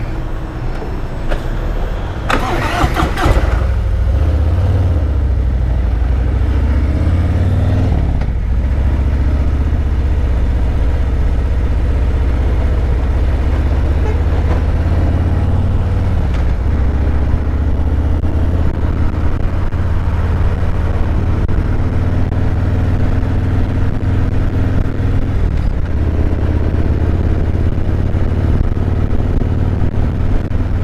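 2017 Harley-Davidson Road Glide Special's Milwaukee-Eight 107 V-twin pulling away from a stop and accelerating. Its pitch rises and drops back at gear changes about eight and sixteen seconds in, then it carries on under steady throttle. There is a brief rush of noise about three seconds in.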